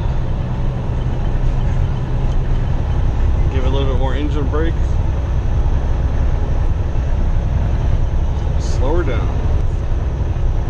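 Semi truck's diesel engine held back by its engine brake at a medium setting while coasting downhill in ninth gear: a steady low drone heard inside the cab.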